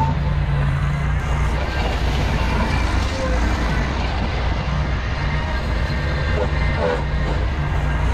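Ventrac compact tractor's engine running steadily under load, with its Tough Cut rotary brush deck spinning as it cuts tall grass and brush.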